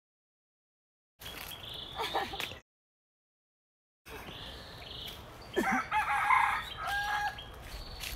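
A rooster crowing about six seconds in, over a faint steady high-pitched drone. The sound drops out to complete silence twice in the first half.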